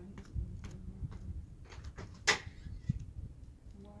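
Low wind rumble on the microphone with scattered small clicks and knocks, the loudest a single sharp click a little past two seconds in.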